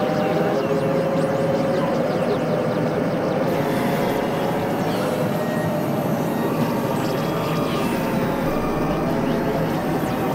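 Dense experimental electronic drone music, several layers overlapping: a steady wash of noise with a few sustained midrange tones and many short chirping pitch glides on top.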